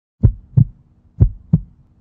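Heartbeat sound effect: two lub-dub double thumps about a second apart, loud and deep.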